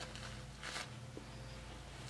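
A brief, faint rustle of a Huggies disposable diaper being fastened, about two-thirds of a second in, over a low steady hum.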